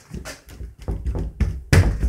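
A hand pushing hard against a closed, latched interior door, making a few dull thuds and knocks. The loudest comes near the end.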